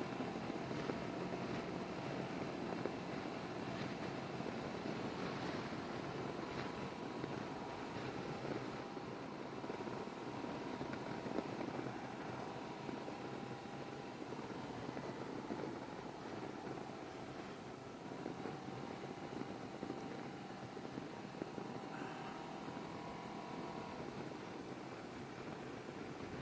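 Can-Am Ryker three-wheeler cruising along a road: a steady mix of engine and road noise, with faint engine tones that waver a little and ease slightly past the middle.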